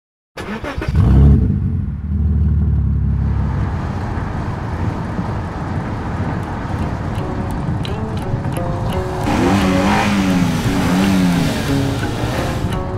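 A classic muscle car's engine comes in suddenly with a loud rev about half a second in, then keeps running as the car drives. Music with held notes joins over the engine in the second half.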